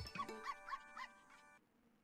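The Dog House Megaways online slot's game audio: a short, faint pitched jingle with a few quick chirping blips as a spin's win is paid. It stops abruptly about a second and a half in.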